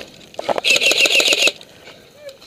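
Airsoft electric rifle (AEG) firing a short full-auto burst of about a second, rapid even shots at roughly ten a second.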